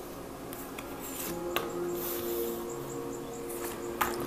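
Tarot cards being laid down and slid on a cloth-covered table, with a few light taps and rustles, the sharpest about one and a half seconds in. Soft background music of long held notes plays underneath.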